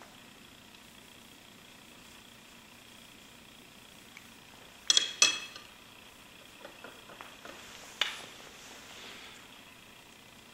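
Clinks of a hard tool against a small dish or jar that rings briefly: two quick clinks about halfway through, a few light ticks, then one more clink near the end.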